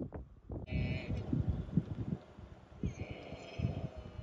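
Camel calling twice, a short call about a second in and a longer one near the end, over low irregular thumps.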